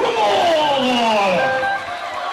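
Several voices singing or calling out in long downward slides in pitch, with no drumming under them.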